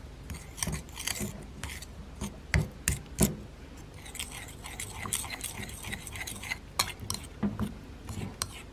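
Spoon stirring and mashing miso paste into vinegar in a ceramic bowl. The spoon knocks against the bowl in irregular clicks and taps, and a wet scraping swish thickens about halfway through as the mixture turns smooth.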